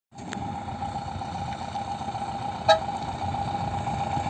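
Volkswagen box truck's engine running low as it approaches slowly, with a steady high-pitched tone throughout and one short, sharp toot about two-thirds of the way in, the loudest sound.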